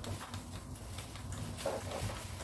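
Faint handling noise from the plastic body of a cordless stick vacuum being turned and fitted to its wand: light clicks and rubs, with a short dull sound near the end.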